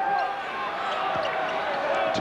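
A basketball being dribbled on a hardwood court over a steady din of arena crowd noise.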